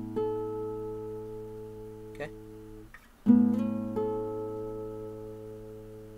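Acoustic guitar, its B string tuned down to A, playing a high chord shape over the open A string. The chord is struck and left to ring, with a note changing a moment later. The same is played again about three seconds later.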